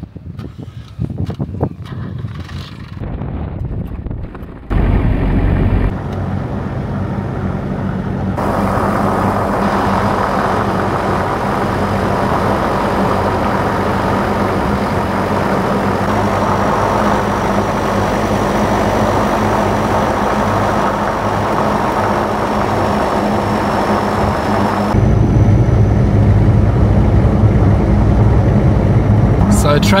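Toyota Hilux V6 pickup driving on a sandy desert track: a steady engine drone with road and tyre noise. It comes in a few cut clips after a lighter, uneven opening of about five seconds.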